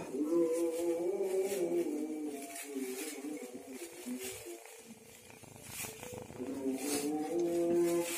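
Melodic Qur'an recitation (qiro'ah) by a male voice, long held and slowly bending notes, easing off in the middle and swelling again near the end. Light crinkling of a plastic bag as kittens play on it.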